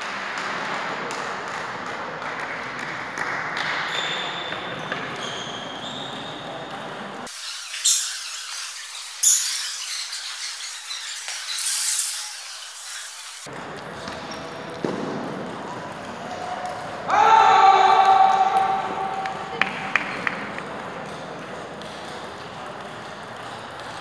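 Sports hall ambience between table tennis points: scattered background voices echoing in the large hall, with a few light ball taps. A loud pitched call about 17 seconds in.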